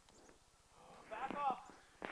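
A short, high-pitched call with a quavering, falling pitch, a little over a second in.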